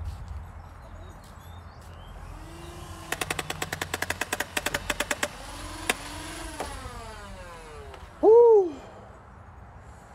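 Nerf Rival Perses motorized blaster firing full-auto: its flywheel motors spin up, a burst of rapid shots follows at about ten a second for two seconds, and then the motors wind down with a falling whine. Near the end comes a short loud vocal cry that rises and falls in pitch.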